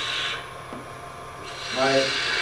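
Turning tool cutting the end grain of a spinning wood spindle on a lathe: a hissing scrape, strongest at the start and fainter after about a third of a second.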